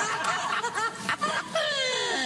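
Sitcom audience laughter following a joke, many voices at once, thinning out about a second in. Near the end a single voice slides down in pitch.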